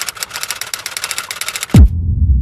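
Electronic intro sting: a rapid, dense clicking clatter over a steady tone. Near the end it cuts off into a deep, steeply falling boom, which runs on as a low rumble.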